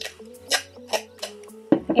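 Masking tape being pulled off its roll in a few short, sharp rips, over background music with steady held notes.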